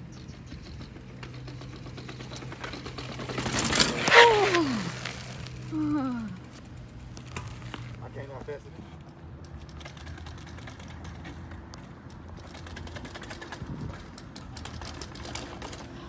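Mountain bike clattering down concrete stairs, with rapid ticks and rattles. About four seconds in comes a loud burst: a whoop falling steeply in pitch. Two shorter falling calls follow at about six and eight seconds.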